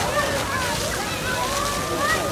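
Fountain water jet splashing steadily, with many people's voices chattering around it.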